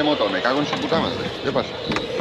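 People talking indistinctly over a steady background hiss.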